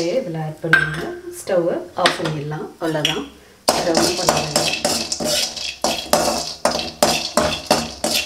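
Metal spoon scraping and clinking against an aluminium kadai as roasting peanuts are stirred. The rapid clatter starts about halfway in and keeps up from then on.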